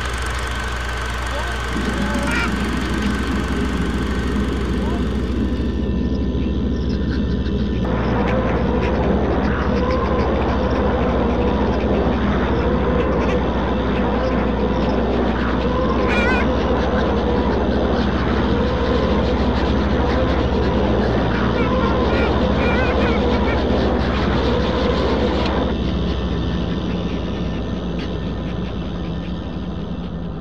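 Dense layered horror-film sound collage: a steady low drone under overlapping, warbling voice-like sounds with no clear words. Layers cut in abruptly a few seconds in, thicken through the middle, and drop away a few seconds before the end.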